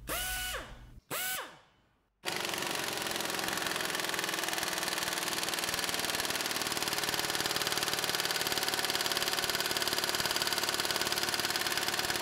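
Pneumatic impact wrench hammering steadily on a torque dyno through a deep impact socket, a rapid even rattle of hammer blows lasting about ten seconds before it cuts off. It is preceded by two short free-spinning blips, their pitch rising and falling.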